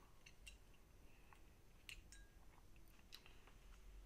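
Near silence with a few faint, scattered clicks and rustles from hands working small fly-tying tools and materials at a vise.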